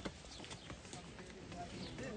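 Faint footsteps of a group of people walking up stone steps, scattered taps, with low voices in the background.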